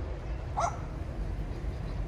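A single short, yelp-like animal call about half a second in, over a steady low rumble.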